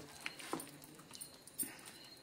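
A hand squishing chicken pieces through a thick, wet batter of gram flour, egg and spices in a steel plate: a few faint, soft squelches and clicks.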